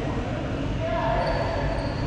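A racquetball bouncing on the hardwood court floor between points, with indistinct voices.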